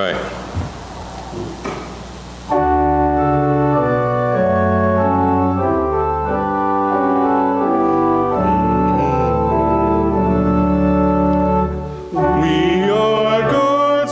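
Organ playing a slow introduction of sustained chords that change step by step, starting about two and a half seconds in. Near the end, voices begin singing the psalm refrain over it.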